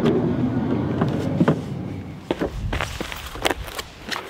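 A van's sliding side door rolling open along its track, followed by a few footsteps crunching on dirt and gravel.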